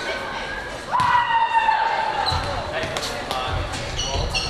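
A volleyball bounced on a hardwood gym floor, sharp thuds ringing in a large gymnasium.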